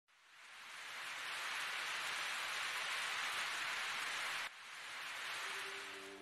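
Steady rain falling, a fine even hiss that fades in over the first second, breaks off abruptly about four and a half seconds in, then carries on a little quieter.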